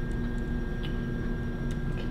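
Steady background hum with a thin high tone, and a few faint ticks scattered through.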